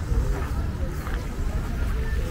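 Voices of people talking at a distance over a steady low rumble.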